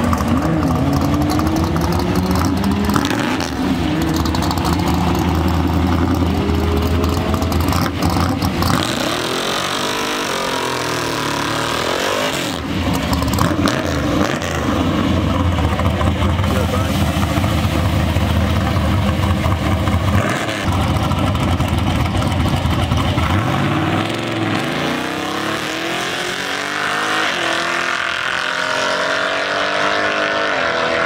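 Holley-carbureted, nitrous-fed engine of a drag-racing pickup truck revving at the start line, its pitch swinging up and down. Near the end it launches and accelerates away down the strip, pitch climbing. The driver says it stumbled off the line on this run.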